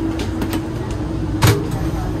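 Interior of a Hyundai Rotem bilevel commuter rail coach: a steady low rumble with a constant hum, a few light clicks, and one sharp knock about one and a half seconds in.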